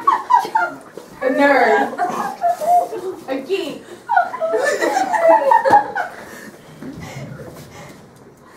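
Several young people's voices talking over one another, with chuckling and laughter; it grows quieter for the last two seconds or so.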